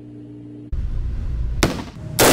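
AR-style rifle fired in an indoor shooting range: a loud low rumble, then a single sharp shot about one and a half seconds in that rings off the range walls.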